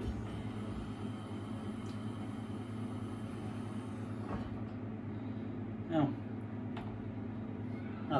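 Stout on 75/25 beer gas flowing from a keg stout tap into a pint glass, a steady hiss over a low hum. There is a faint click about four seconds in.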